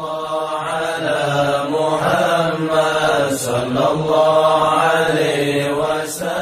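Chanted vocal music: a voice holding long, wavering melodic notes over a steady low drone.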